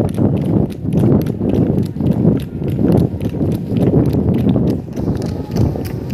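A bullock's hooves clattering in quick succession on a paved road as it trots pulling a cart, over a loud low rumble that swells and fades about once a second.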